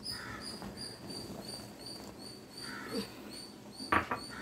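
Liquid being poured into a clay pot of frothing, boiling pongal, with a faint high chirping repeating about three times a second in the background and a sharp knock at the end.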